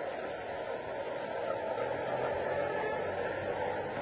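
Steady background hiss of an old lecture recording, with no distinct sound; a faint low hum comes in about halfway.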